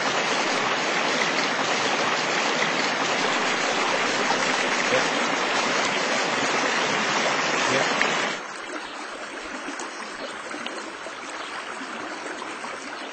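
Water of a small river running steadily over its bed, a dense even rush. About eight seconds in it drops suddenly to a quieter, steadier flow.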